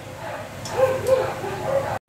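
A dog making a few short, high-pitched calls, the last near the end.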